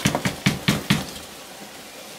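Cardboard egg flat knocked against the edge of a plastic storage tub, about five sharp taps in the first second, shaking dubia roaches loose into the bin.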